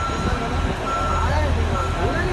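A vehicle's reversing alarm beeping in long steady tones with short gaps, over the low rumble of a running diesel engine, with men's voices talking close by.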